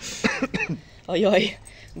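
A person coughs once at the start, followed by two short fragments of voice.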